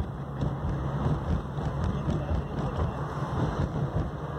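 Car driving: a steady low rumble of engine and tyre noise.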